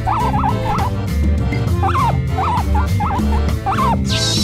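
Guinea-pig squeaks, the 'pui pui' voices of Molcar plush characters: short rising-and-falling squeaks in quick runs, a cluster at the start and more from about halfway on. Background music with a steady low beat plays under them.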